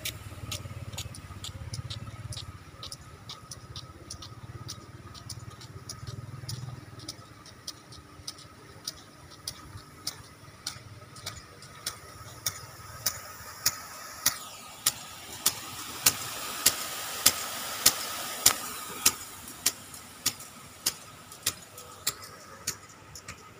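Impact sprinklers watering a grass pitch: a steady ticking of about two clicks a second from the sprinkler arm. The ticking grows louder in the second half and is joined by a rush of water spray that is loudest a little after two thirds of the way through. A low hum underlies the first third.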